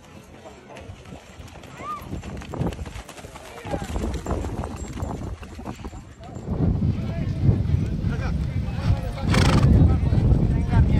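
Hooves of horses walking on a dirt track, an uneven run of clops that grows louder in the second half, with a low rumble under it.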